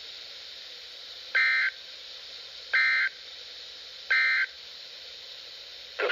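Three short buzzy data bursts of the Emergency Alert System end-of-message signal, about a second and a half apart, over faint static from a handheld weather radio's speaker. They mark the end of the special marine warning.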